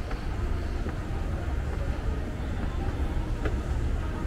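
Escalator running, a steady low mechanical rumble heard while riding it, with a faint click near the end.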